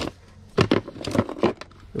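Small hard plastic toy figures clattering and clicking against each other as hands rummage through a plastic tote full of them, in a few short bursts of clicks starting about half a second in.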